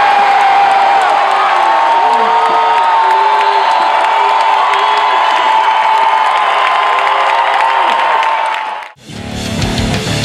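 Large stadium crowd cheering and shouting, with long held calls and whoops over a steady roar. About nine seconds in it cuts off suddenly and loud rock music with guitar starts.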